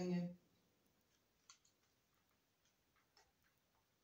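A man's word ends, then a handful of faint, scattered clicks sound in a quiet room, the clearest about a second and a half in and again near three seconds.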